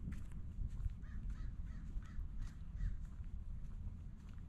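A bird calling: a quick run of about six calls in under two seconds, over a steady low rumble.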